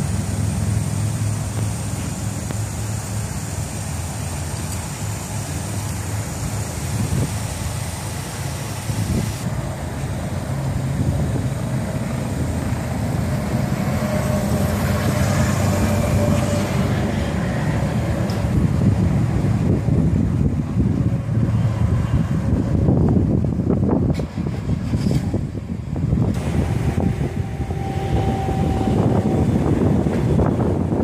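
Honda Gold Wing's flat-six engine idling and then running at low speed as the motorcycle rides off across the lot. Wind buffets the microphone throughout, growing stronger in the second half.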